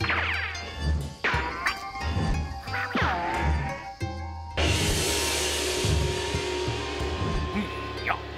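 Cartoon background music with three quick falling-pitch swoop effects in the first three seconds. About halfway through a gong is struck with a loud crash, and it rings on with a steady shimmer until the end.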